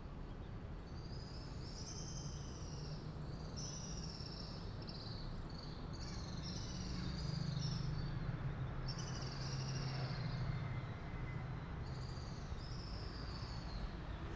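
Birds chirping in short, high, sliding calls repeated every second or two, over a steady low rumble that grows a little louder around the middle.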